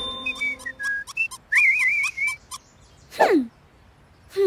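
Cartoon sound effects: short whistle-like chirps and a warbling whistle tone over light ticking clicks, then one quick falling slide-whistle glide about three seconds in.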